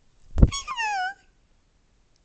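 A knock of the phone being handled, then a short, high-pitched squeal that falls in pitch and is over in about half a second.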